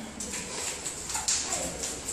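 Footsteps and a glass door being handled as people walk through it: a few short clicks and knocks, with a brief falling squeak a little past a second in.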